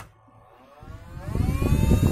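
A rotary switch clicks, then a 12 V DC square cooling fan spins up, its whine rising in pitch over about a second and a half and settling to a steady whir, with a rush of air building up alongside it.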